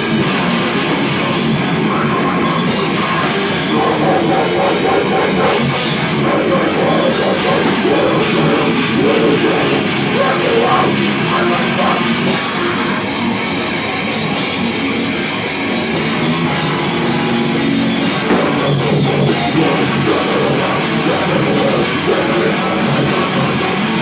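Loud heavy rock band playing live, with the drum kit prominent over the guitars, playing without a break.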